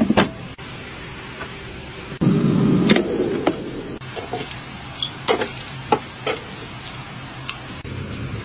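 An air fryer's plastic basket drawer being slid along its rails, with a rumbling slide lasting under a second about two seconds in, then several sharp clicks and knocks as the basket is handled.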